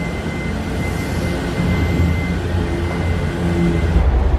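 Steady low mechanical hum with a faint, thin high tone that stops about three seconds in.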